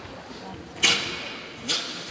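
Two sharp cracks about a second apart, echoing in a large hall: taekwondo dobok uniforms snapping with fast strikes during a pattern performance.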